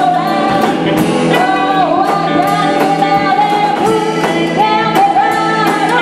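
Live rock band playing: a woman sings held lead-vocal notes over electric guitars and a drum kit keeping a steady beat with cymbal hits.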